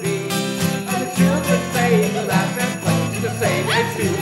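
Sleigh bells shaken steadily in time over a strummed acoustic guitar and mallet-struck orchestra chimes, with voices singing along; near the end a voice slides upward.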